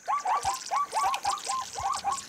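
Small birds calling: a rapid series of short chirps, each rising then dipping in pitch, about five a second.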